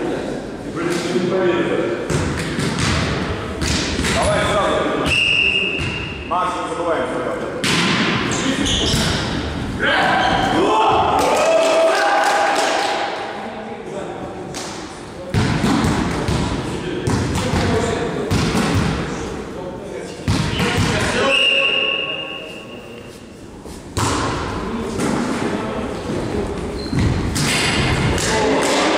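Indoor volleyball play in a reverberant gym: players' voices calling out, the ball being struck by hands and thumping on the wooden floor, and two short high whistle blasts, one about five seconds in and another about twenty-one seconds in.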